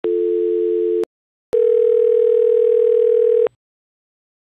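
Telephone call tones: a steady dial tone for about a second, cut off with a click, then after a short pause a ringing tone that lasts about two seconds.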